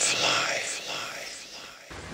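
A person's whispered, breathy voice from a spoken dialogue sample, with no music under it, fading away over about two seconds.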